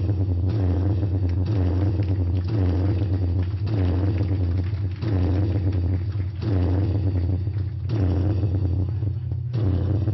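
A loud, steady low drone from the band's amplifiers, with a swelling noise over it that comes back about once a second.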